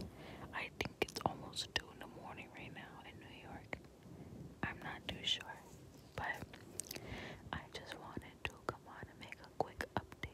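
A person whispering close to the microphone, with small sharp clicks between the words.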